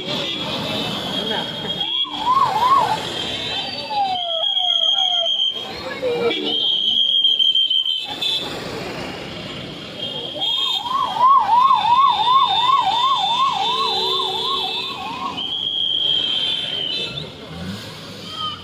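An electronic siren sounding in spells over a noisy crowd background. There are short warbles and falling sweeps early on, and a long fast warble of about two and a half cycles a second from about ten to fifteen seconds in, with high steady whistle-like tones between the spells.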